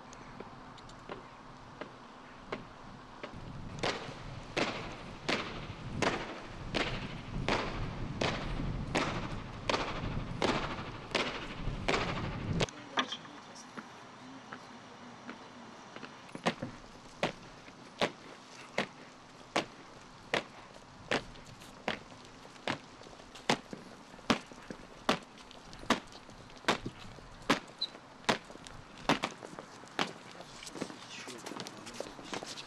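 A marching honor guard's boots striking stone paving in step: sharp, evenly spaced footfalls about one and a half a second. A low rumble sits under the first run of steps and cuts off suddenly about twelve seconds in, and the steps pick up again a few seconds later.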